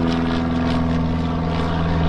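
Small propeller plane flying overhead, a steady propeller drone.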